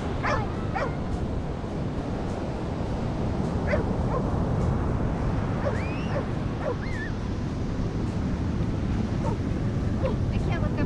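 Steady rush of surf and wind, with a few short, high whines from a dog about six and seven seconds in.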